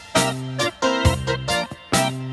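Instrumental progressive rock: short, punchy keyboard chords over bass and drums, about two a second.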